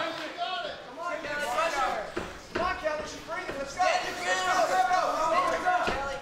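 Voices shouting in the arena, overlapping and not clearly worded, over the sound of the hall.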